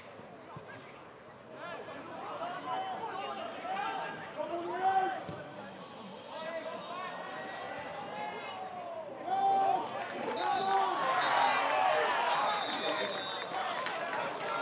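Football players and a small crowd of spectators shouting and calling out during play, growing louder over the last few seconds, with a few sharp knocks near the end.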